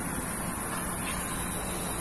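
Steady outdoor background noise: an even, constant hiss with no distinct events.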